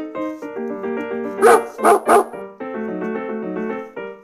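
A Pomeranian barking three quick times, sharp and high, about a second and a half in, over piano background music.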